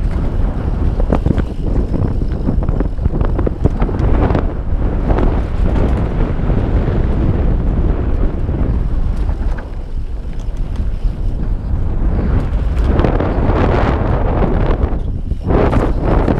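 Wind buffeting a helmet-mounted action camera's microphone as a mountain bike descends a loose dirt singletrack, with a steady low rumble of tyres on dirt and frequent short knocks and rattles from the bike over bumps.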